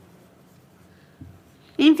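Felt-tip marker writing on a whiteboard: a faint, soft scratching of the pen as a short word is written. A woman's voice starts speaking near the end.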